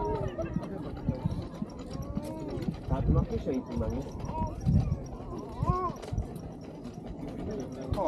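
Passers-by talking on a busy pedestrian walkway, their voices rising and falling, with footsteps on paving stones.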